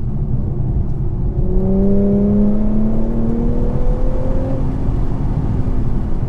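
Infiniti Q50's engine pulling under acceleration, its note rising steadily in pitch for about three seconds from a second and a half in, then easing off. It is heard inside the cabin over a constant low road rumble.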